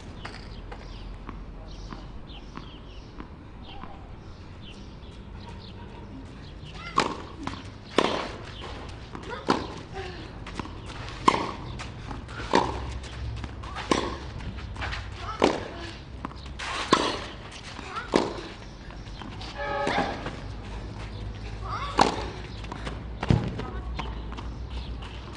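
Tennis rally on a clay court: a serve about seven seconds in, then tennis balls struck by racquets back and forth about every one and a half seconds, with a short vocal grunt on some of the shots. The rally ends a couple of seconds before the end.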